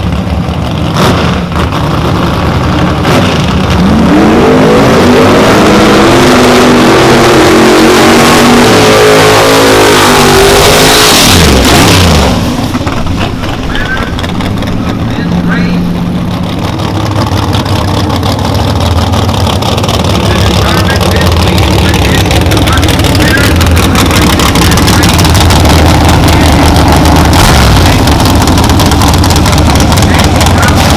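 Drag-racing Camaro's engine revving up on the starting line, its pitch climbing over several seconds, then a sharply falling sweep about eleven seconds in as the car pulls away. After that, engines run steadily at a lower pitch.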